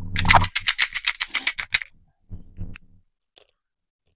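Dropper bottle of brush-on primer shaken hard, the mixing ball inside rattling in a quick even run of about seven clicks a second for nearly two seconds. A few soft handling knocks and a single click follow.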